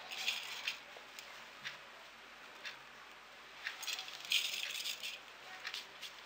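Damp couscous grains dropped and sifted by hand into an aluminium couscoussier steamer basket: soft rustling in two bursts, one at the start and one about four seconds in, with a few light clicks between.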